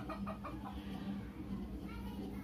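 Faint clucking of a chicken in the background: a few short clucks in the first half-second, and another about a second in, over a steady low hum.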